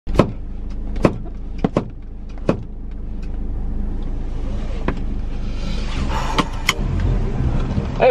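Car cabin noise with a steady low rumble, broken by about eight sharp, irregularly spaced clicks and knocks. A hiss swells about two-thirds of the way in, and the low rumble grows louder near the end.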